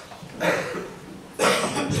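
Two coughs about a second apart, the second the louder.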